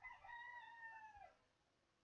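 A faint animal call: one long call held at a steady pitch, dropping at its end, lasting about a second and a half.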